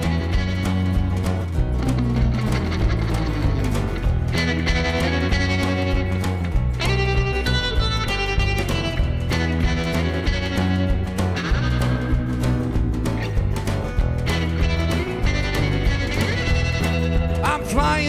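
Live rock band playing an instrumental passage: electric guitar, strummed acoustic guitar, electric bass and drums, with sliding guitar notes a few seconds in.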